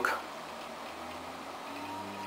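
Faint steady electrical hum and hiss with a thin high steady tone underneath: room tone between words.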